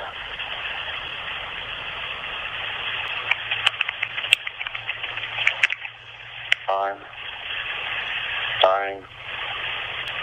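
A phone voicemail played back through a phone speaker: a steady, rough rustling noise made by shaking a hand against the calling phone, with scattered clicks, and two short vocal sounds from the caller about 7 and 9 seconds in. The recording is staged to sound like a man overdosing, which the listener takes for a manipulation tactic.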